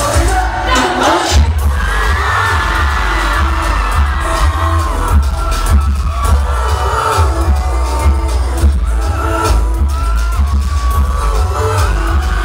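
Live pop song through a concert PA, its heavy pulsing bass distorting the phone's microphone, with a voice singing over the beat.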